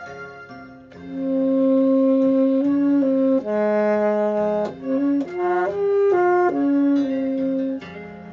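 Tenor saxophone playing a slow enka melody over a backing accompaniment. The sax comes in about a second in with long held notes, moves through a run of shorter notes, and pauses briefly near the end.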